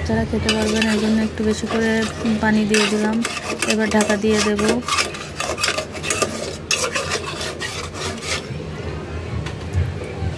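A metal spatula scraping and clinking against the inside of an aluminium pot as a watery chicken-feet and potato curry is stirred, in a quick run of scrapes and knocks. A steady low pitched hum runs under the first half and stops about five seconds in.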